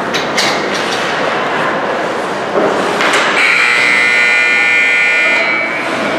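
Ice rink's scoreboard buzzer sounding one steady, many-toned blast of about two and a half seconds, starting a little past three seconds in, as the period clock runs out. Before it, a few sharp stick and puck clicks over rink noise.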